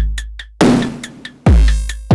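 Electronic drum beat run through the Pas-Isel filter (a Buchla 191-style low-pass with heavy drive): two deep kicks with falling pitch, at the start and about a second and a half in, a few quick ticks after the first, and a wash of noise in the middle. With the second kick comes a buzzy burst of oscillator overtones injected on beat one.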